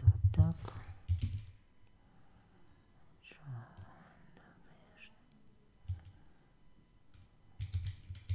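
Typing on a computer keyboard in short bursts of keystrokes, with a brief mumbled or whispered voice in the first second.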